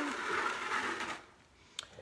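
Paintbrush scrubbing chalk paint onto a wooden dresser: a scratchy brushing noise for about a second, then a single sharp click near the end.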